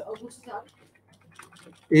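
Computer keyboard typing: a handful of short, scattered key clicks.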